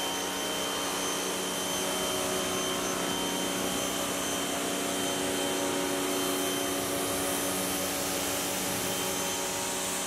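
Pressure washer running steadily, its jet hissing as it rinses water over a car's front grille and bumper, over an even motor hum.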